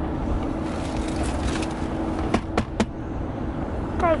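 Road and engine noise inside a moving car's cabin: a steady low rumble with a faint steady hum. Three short clicks or taps come a little past halfway.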